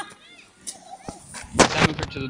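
Mostly quiet, with a couple of small clicks, then one loud, short thump about a second and a half in.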